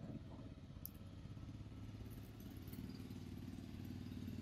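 Faint engine running steadily at low revs, a little louder from about three seconds in.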